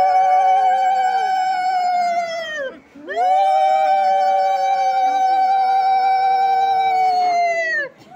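Long, loud blasts on blown ritual horns, at least two sounding together at slightly different pitches. A short break falls about three seconds in, then a second blast is held for about five seconds, and each note sags in pitch as it dies away.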